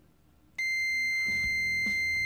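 Multimeter continuity beeper sounding a steady high-pitched beep that switches on about half a second in, as the probes close the circuit through a small glass Christmas-light fuse. The beep means there is continuity: the fuse is good.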